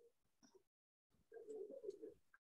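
Near silence, with a faint, low sound from about a second and a half in, lasting under a second.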